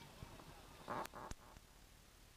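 Faint outdoor background with a brief distant voice about a second in, framed by two sharp clicks.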